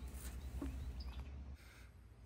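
Quiet outdoor background with a few faint bird chirps over a low hum that drops away near the end.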